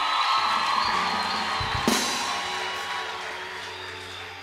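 Drum kit with cymbals ringing. A kick-drum thump and a crash come a little under two seconds in, and the sound then fades away.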